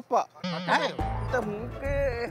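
A man's wavering, sobbing voice, then background music with a deep bass comes in about a second in.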